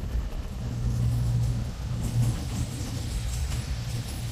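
CrossCountry Voyager diesel-electric multiple unit moving past slowly, its underfloor diesel engines giving a steady low drone over rolling wheel noise.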